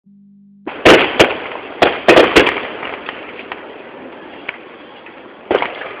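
Aerial fireworks shells bursting: five sharp bangs in quick succession in the first two and a half seconds, then a fading tail of crackle and scattered small pops, and another bang near the end.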